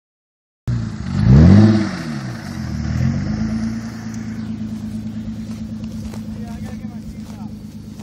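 2006 Kia Sorento's engine revving hard through a doughnut on grass. The pitch climbs steeply and falls back about a second in, rises again around three seconds, then settles to a steady run that fades as the SUV pulls away.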